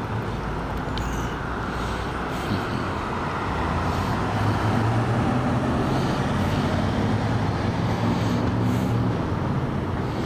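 Road traffic noise, with a motor vehicle driving past close by: its engine hum and tyre noise swell from about four seconds in and fade again near the end.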